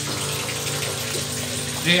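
Twin-tub washing machine's spin dryer running steadily, with water rushing out of the spinning clothes through the drain.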